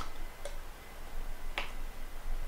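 Computer mouse clicking: a sharp click at the start, a faint click about half a second in, and another sharp click about a second and a half in.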